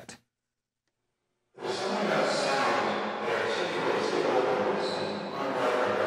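A spoken-word loop processed through the Erica Synths Pico DSP's saturated reverb, the voice smeared into a dense, continuous wash with a very 40s-sounding radio character. It comes in suddenly after about a second and a half of silence.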